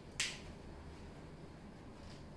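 A single short, sharp click about a fifth of a second in, followed by faint room tone.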